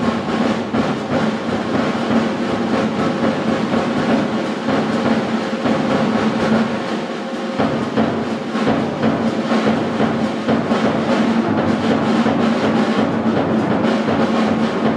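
Jazz big band playing live, with the drum kit hitting repeatedly under held notes.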